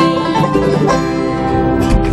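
Acoustic bluegrass band (banjo, mandolin, dobro, guitar and upright bass) playing the closing bars of a fast song, settling onto a held final chord about halfway through, with a sharp change just before the end.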